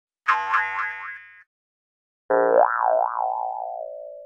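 Two cartoon boing sound effects: a short springy one with a wobbling pitch about a quarter second in, then a longer one about two seconds later whose wobbling pitch sinks as it fades.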